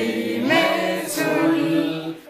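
A small group of people singing a birthday song together, without instruments, in long held notes.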